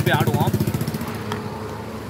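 A man's voice for the first half second, then a small motorbike or scooter engine running with a low, fast pulsing, fading away over the following second or so.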